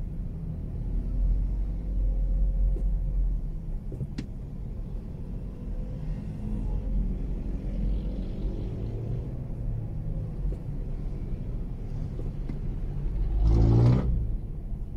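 Low, steady rumble of a car moving slowly through traffic, heard from inside the cabin. Near the end a louder engine note climbs in pitch as a vehicle revs up.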